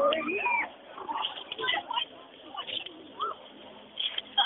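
Indistinct voices of several people talking and exclaiming, with a short rising-and-falling high call about three seconds in.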